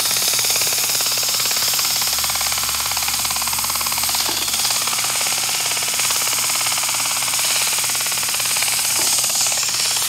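Sandpaper held against the spinning shaft of a 1955–56 Fedders air conditioner's General Electric fan motor: a steady, loud hiss with the motor's low hum underneath. It is the shaft being polished clean of surface rust.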